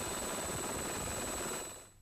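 Steady helicopter noise as heard from on board, an even rushing drone with a faint high whine, fading out near the end.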